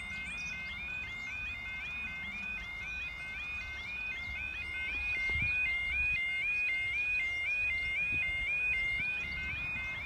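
Level-crossing Yodalarm sounding its repeating warble, a stepped rising yodel about three times a second, a little louder in the middle of the stretch.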